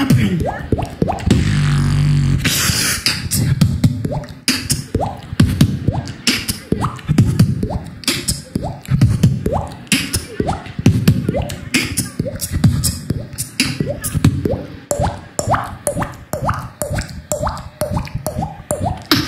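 Beatboxing into a handheld microphone: a fast, continuous beat of mouth-made kick drums, snares and clicks, with a held low bass hum about a second and a half in.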